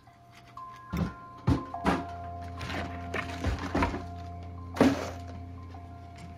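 Film soundtrack: sparse score of sustained, bell-like tones over a low hum, broken by several dull thuds, the loudest about five seconds in.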